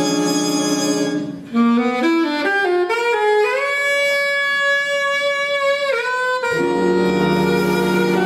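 Jazz band playing, then cutting off about a second and a half in, leaving an alto saxophone alone playing a rising run of notes up to one long held note in a solo cadenza. The full band comes back in with a sustained chord near the end.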